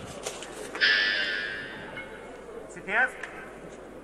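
Shouts in a weightlifting arena as the lifter sets up at the bar: a loud yell about a second in that trails off over a second and a half, then a short rising whoop near three seconds.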